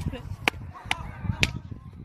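Hand slaps in a fight between two people: four sharp smacks, about two a second, over low voices.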